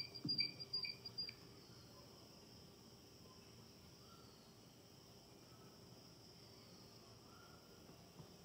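A few faint, high chirps, about two or three a second, in the first second or so, then near silence: quiet room tone.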